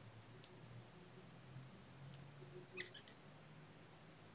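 Near silence over a faint steady hum, broken by a few faint clicks of pliers and copper wire being worked around a pendant frame: a single tick about half a second in and a small cluster of clicks just before three seconds in, the loudest.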